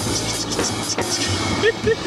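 Drum kit played in short strokes over a backing music track, with a brief laugh about a second in.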